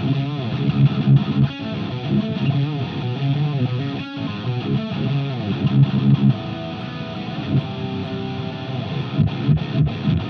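Electric guitar played through a Positive Grid Spark Cab and picked up by a microphone in front of the cab: a Deviant Guitars Linchpin with a Heathen Fenrir pickup, run through a Neural DSP Quad Cortex amp profile. The playing is continuous, with changing notes and chords and a strong low end.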